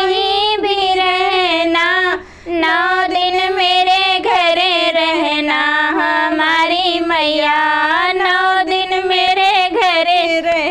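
Two women singing a Hindi devotional bhajan to the goddess together, in a continuous melodic line with a short pause for breath about two seconds in.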